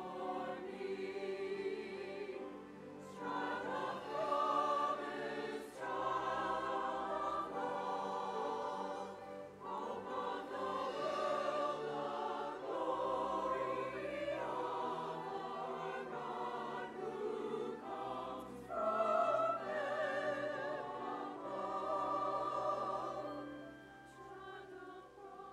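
Mixed church choir singing in sustained phrases with vibrato, accompanied by a string orchestra. The music fades down near the end.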